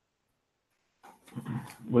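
Silence for about a second, then a microphone opens on a short voiced sound that leads straight into a man starting to speak.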